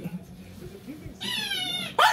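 Small dog whining in play: one high-pitched, wavering whine lasting almost a second near the end.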